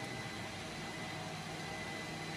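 Steady whirring hum of cooling fans, with a faint steady high-pitched whine running through it.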